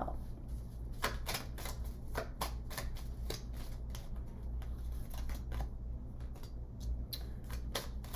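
A deck of cards being shuffled by hand: an irregular patter of short card flicks and slaps, over a low steady hum.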